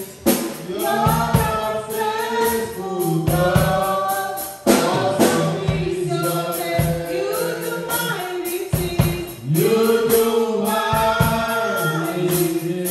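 A woman singing a gospel worship song into a handheld microphone over musical accompaniment with a steady beat.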